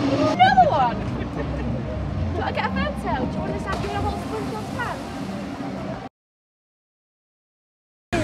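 Scattered voices over a low, steady outdoor rumble. The sound cuts off abruptly about six seconds in, and the rest is dead silence.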